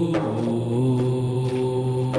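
Intro music: a wordless vocal chant of long held notes that shift slowly in pitch.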